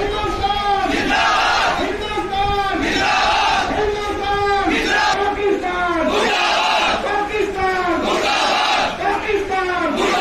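A crowd of protesters shouting slogans together: a rhythmic string of short, loud shouts, repeated again and again.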